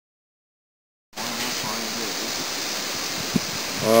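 Silence, then about a second in a steady outdoor rushing noise, the wind-and-water ambience of a river bar, begins and carries on. A single click comes near the end, just before a man's voice.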